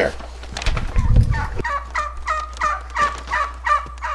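Domestic poultry calling in a rapid, even series of short harsh notes, about four to five a second, starting about a second in. A brief low rumble sounds under the first calls.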